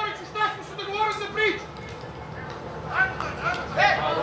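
Men's voices talking in short snatches, with a quieter pause in the middle.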